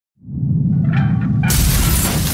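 Intro sound effects over music: a low rumble builds, then about one and a half seconds in comes a sudden loud crash of a stone wall shattering.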